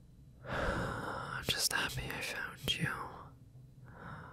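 A man whispering close to the microphone, the words too breathy to make out, with a few sharp mouth clicks in the middle.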